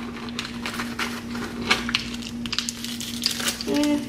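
A clear plastic bag crinkling and rustling in the hands, with a run of small sharp clicks and crackles as it is opened and searched through, with a steady low hum underneath. A brief hum of a voice comes near the end.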